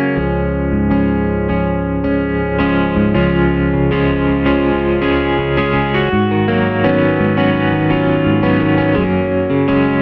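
Yamaha Montage 7 synthesizer playing a sampled guitar patch: chords struck about twice a second over a moving bass line.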